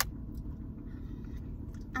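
Steady low rumble inside a car cabin, with a sharp click at the very start and a few faint ticks.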